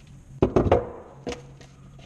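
Shoe last knocking against the worktable as it is handled: a quick cluster of knocks about half a second in, then one more knock a little later.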